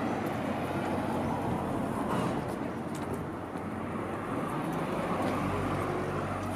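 Street traffic noise: a motor vehicle's engine running steadily, with a low hum that grows a little stronger near the end.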